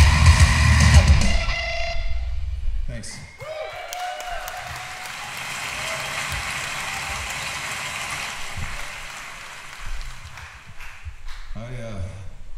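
Hardcore punk band with drums, distorted guitars and screamed vocals, cutting off at the end of a song about a second and a half in. An audience in a hall then cheers and claps for several seconds, with scattered shouts, dying down near the end.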